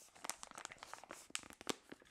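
Foil coffee bag crinkling as it is handled: a run of faint crackles and clicks, with a few sharper ones in the second half.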